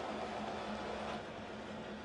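Steady low background noise of a football match broadcast: an even hiss with a faint steady hum. It dips slightly about a second in.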